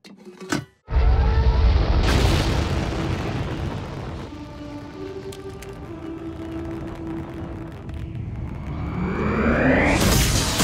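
Cartoon sound effects over music. A loud, deep rumbling boom starts about a second in, held musical notes follow, and a rising sweep climbs near the end into louder music.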